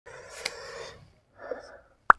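Faint breathy noise of a person breathing out, about a second long, followed by a shorter breath about halfway through.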